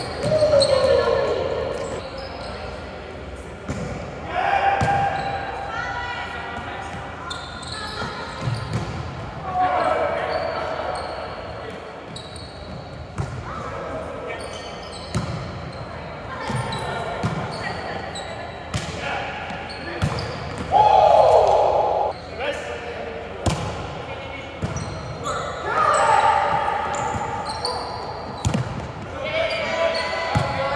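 Indoor volleyball being played in a large, echoing gym: sharp smacks of the ball off players' hands and forearms during rallies, mixed with players' shouted calls and chatter.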